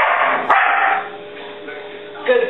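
Large white dog barking twice on the command "speak 2", counting by barks. The first bark starts right at the opening and the second comes about half a second in.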